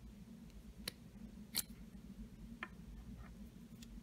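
Four light clicks of a metal lipstick tube being handled and uncapped, the loudest about a second and a half in.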